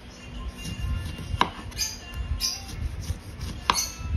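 A kitchen knife slicing through a lemon on a cutting board, with two sharp knocks of the blade reaching the board, one about a second and a half in and one near the end.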